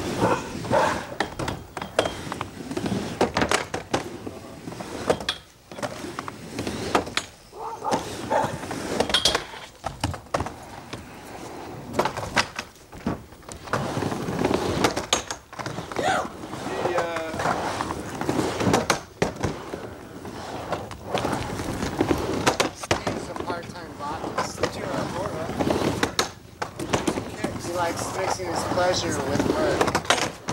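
Skateboard riding a wooden backyard mini ramp: a continuous rolling rumble of the wheels on the ramp surface, broken by repeated sharp clacks and knocks of the board and trucks against the deck and coping.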